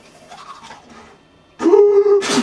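Quiet scrubbing of a toothbrush on teeth. About a second and a half in, it gives way to a loud vocal cry from a man, held on one pitch.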